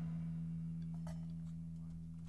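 A low sustained note left ringing after the band stops, fading slowly as the song's last note dies away.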